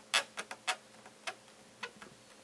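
White PVC pipe table leg being twisted and wiggled in its socket on a wooden slatted table top to work it loose, giving about half a dozen sharp, irregular clicks, most of them in the first second.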